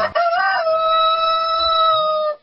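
A rooster crowing once: a short rise and fall, then a long held final note.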